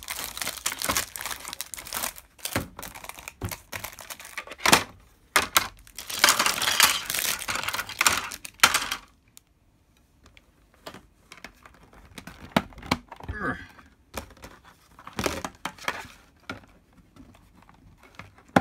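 Clear plastic packaging crinkling and rustling as bagged plastic panels are unwrapped, loudest about six to nine seconds in. After that, scattered sharp clicks and taps as the hard plastic panels of a comic display rack are handled and slotted together.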